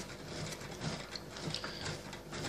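Faint, irregular rubbing and small clicks as thread is worked and pulled tight while binding off the wrap on a fishing rod.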